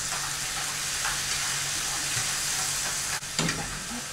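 Chicken pieces sizzling in a hot frying pan as they are stirred and sautéed with a utensil, with a few quick scrapes of the utensil against the pan about three and a half seconds in.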